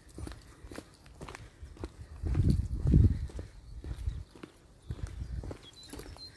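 Footsteps walking along a paved lane, about two steps a second, with a low rumble on the microphone swelling about two to three seconds in.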